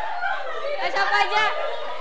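Group chatter: several people talking over one another, with one higher-pitched voice standing out about a second in.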